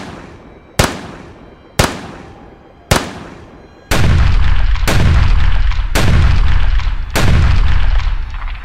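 Tank cannon fire sound effects: sharp cannon shots about a second apart, each with a fading tail. From about four seconds in come louder, deeper shell explosions, a new one roughly every second, their rumbling tails running together.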